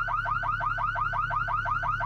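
Car alarm sounding continuously, a fast warbling tone that sweeps in pitch about seven times a second, over a low steady hum.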